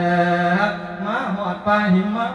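A man singing Thai lae, the melodic sung-sermon style, here a funeral lae sending off a dead monk's spirit. He holds one long note, then wavers and bends the pitch through ornamented turns.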